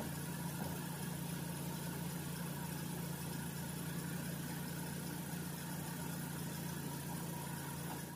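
Toyota Sienna minivan's engine idling steadily with the hood open.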